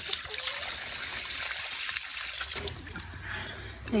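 Water poured from a plastic jug into a rubber water bowl: a steady splashing pour that eases off about two and a half seconds in.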